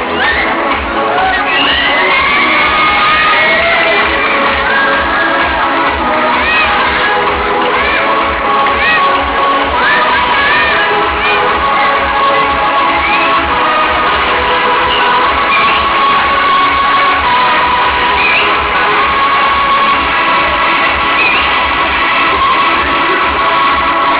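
Loud dance music with a steady bass beat, over an audience cheering, whooping and shrieking.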